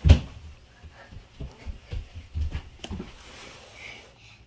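A sharp knock right at the start, then a run of softer low thumps and light handling noises as popcorn tins and boxes are moved about on a table.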